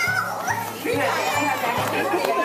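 Children's and adults' voices chattering over background music with a steady beat.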